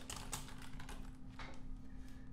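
Computer keyboard typing: a quick run of keystrokes in the first half second, then a single keystroke about a second and a half in.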